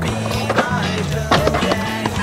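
Skateboard on a ramp, wheels rolling, with two sharp clacks of the board about half a second and about a second and a quarter in, heard over rock music with a steady bass line.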